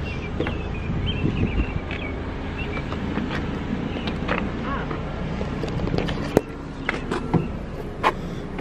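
A car door being opened and someone climbing into the seat, with a few light clicks and one sharp click about six seconds in, over a steady low rumble of a car and faint voices.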